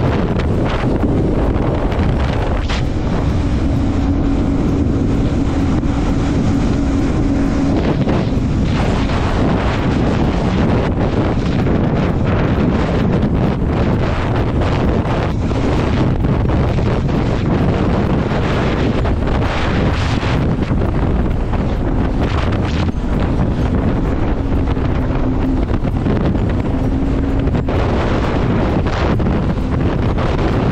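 Loud, steady wind buffeting the microphone on a Yamaha WaveRunner jet ski under way. The watercraft's engine hum comes through as a steady tone in two stretches.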